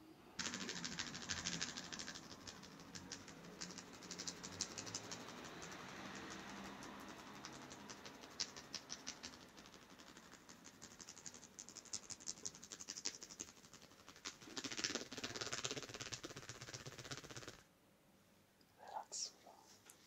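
Soft crackling and rustling of hands rubbing hair and scalp in a head massage, a dense run of small crackles that starts suddenly and stops abruptly about three-quarters through, then one short soft sound near the end.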